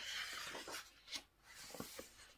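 A page of a paperback picture book being turned: a faint papery rustle over the first half-second, then a soft tap about a second in.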